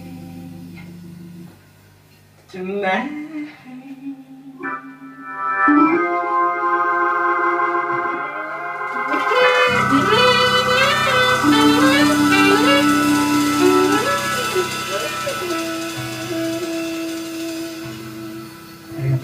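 Live soul-jazz band playing an instrumental passage: after a brief near-quiet moment, sustained organ-like keyboard chords build up, and the full band comes back in with bass and a gliding melody line about ten seconds in.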